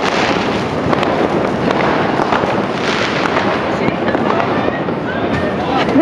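Dense, steady crackle of many fireworks and firecrackers going off, rapid small pops merging into one continuous din with no single bang standing out.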